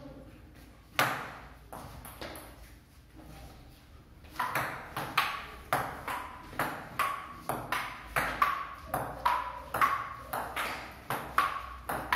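Table tennis ball knocking between paddles and a wooden tabletop: two single knocks about a second in, then from about four seconds a steady rally of sharp, ringing knocks, two to three a second.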